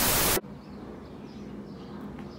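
A burst of TV-static white noise lasting under half a second that cuts off sharply. It is followed by a quiet background with faint, high, short chirps.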